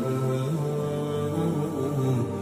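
A deep male voice chanting in long held notes that shift slowly from pitch to pitch, with music.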